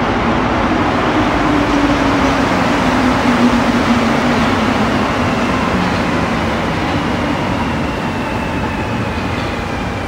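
A rubber-tyred Montreal metro train running into the station: a loud, steady rumble with a motor whine that falls slowly in pitch as the train slows along the platform.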